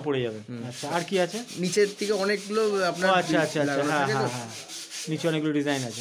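Men's voices talking, over a continuous run of quick rubbing strokes. There is a short pause in the talk about two thirds of the way in.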